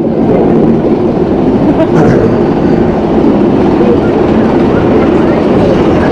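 Steady rumble and clatter of the Nemesis inverted roller coaster train rolling slowly along its steel track, with riders' voices mixed in.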